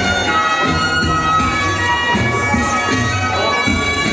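Instrumental interlude of a song's backing track between sung lines: a melody of long held notes on a wind-like instrument over a steady low bass.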